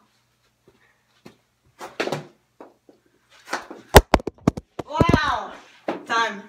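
A couple of sharp, very close knocks about four seconds in, the loudest sound here, as the recording phone is knocked over, followed by a child's exclamation.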